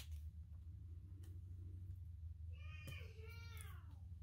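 A cat meowing faintly: one drawn-out call of about a second and a half, past the middle, that rises slightly and then falls in pitch. It sits over a low steady hum, with a sharp click at the very start.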